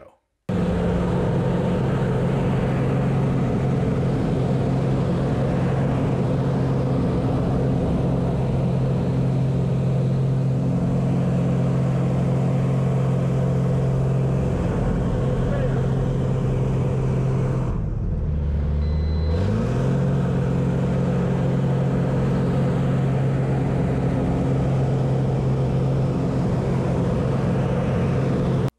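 Pitts Special biplane's piston engine and propeller running steadily at high power, heard from the open cockpit with wind noise. About two-thirds of the way through, the engine note drops in pitch for a moment and then climbs back up.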